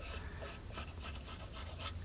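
Faint scratching of a knife blade scraped along the edge of a snakeskin-backed wooden bow, taking off leftover hide glue, over a low steady hum.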